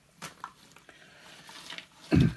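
Faint light clicks and rustling of small board-game pieces, miniature fir trees, being picked out of a cardboard box and set down on a table. A sharper click comes about a quarter second in, and a few softer ones follow.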